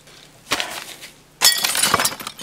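Crackling, clinking handling noise of plastic packaging and small axial electrolytic capacitors on a workbench. It comes in two bursts: a short one about half a second in, and a louder, longer one from about one and a half seconds.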